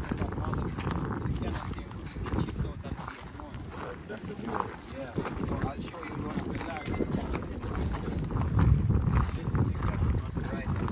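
Footsteps crunching on loose gravel and crushed shell as several people walk, with wind buffeting the microphone.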